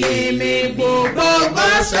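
Voices singing a slow, chant-like worship song, with long held notes that step from one pitch to the next.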